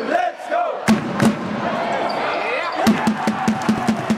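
Indoor sports-hall crowd chanting and calling out during a basketball game, with a ball bouncing on the court. From about three seconds in, a fast, even run of beats joins in, about five a second.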